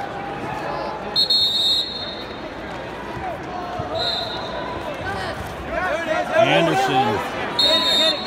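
Three short, shrill whistle blasts, about a second in, at four seconds and near the end, over shouting from coaches and spectators in a large arena. The shouting is loudest a little after the middle, as one wrestler takes the other down.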